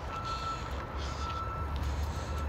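A heavy vehicle's engine rumbles low and steady under a single steady high-pitched tone, like a warning beeper or a machine whine.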